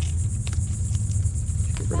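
Crickets chirring steadily, high-pitched, over a constant low rumble.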